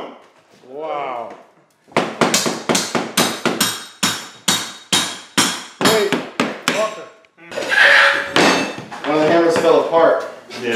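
Steel hammer striking a chisel to break up and pry loose old ceramic floor tiles, about three sharp, ringing blows a second for several seconds. A short rasp follows near the end.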